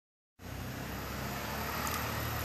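Steady background noise with a faint low hum, beginning abruptly about a third of a second in after a moment of total silence; no distinct sound event.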